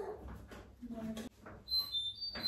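A faint, short stretch of a woman's voice, then a brief high-pitched squeak near the end.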